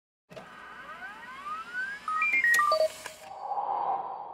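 Electronic logo sting for an animated production-company logo: swooping tones rising in pitch, then a quick run of short blips stepping down with a sharp click about two and a half seconds in, and a soft swelling hum that starts to fade near the end.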